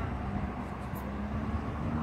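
A motor vehicle running, with a steady low rumble and a constant engine hum.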